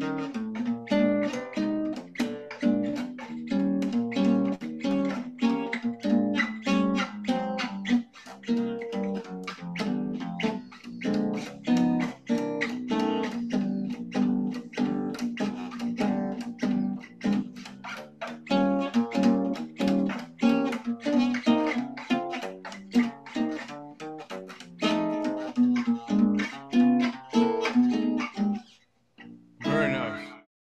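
Seven-string jazz guitar built by Tom Ribbecke, played solo: a walking bass line on the low strings with chords over it, a jazz blues. The playing stops shortly before the end.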